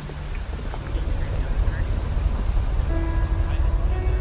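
Low, rough rumbling noise that grows louder about a second in. Steady music notes come in near the end.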